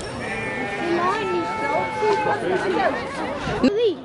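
Voices of people talking, with a few long drawn-out calls.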